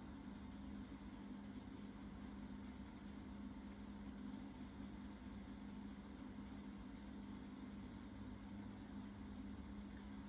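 Quiet room tone: a steady low hum with a faint even hiss, as from a fan or air conditioner.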